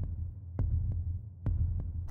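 Background soundtrack of a deep, throbbing bass drone, with four sharp clicks scattered through it.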